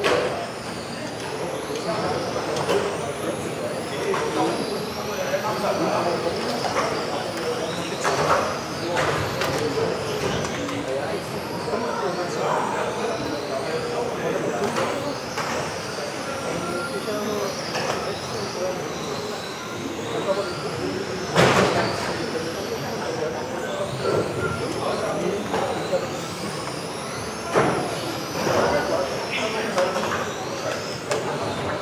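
Electric RC touring cars racing: their motors whine high, rising and falling over and over as the cars accelerate and brake. Background chatter runs underneath, with a few sharp knocks, the loudest about 21 seconds in.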